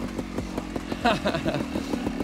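Trials motorbike engine running steadily as the bike rolls along, with the rider laughing briefly about a second in.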